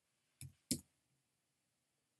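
Two keystrokes on a computer keyboard, short sharp clicks about a third of a second apart, typing a space and a digit into a text box.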